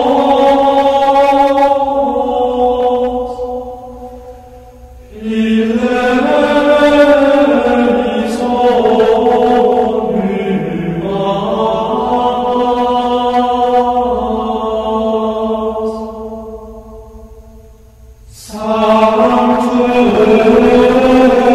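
Slow devotional chant of long held notes, sung in phrases that fade away and begin again, with a new phrase starting about five seconds in and another near the end.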